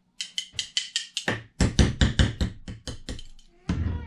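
A glass hot sauce bottle tapped and shaken over a metal spoon, making a quick run of sharp taps at about five or six a second, with a short pause partway. This is thick sauce being worked out of the bottle.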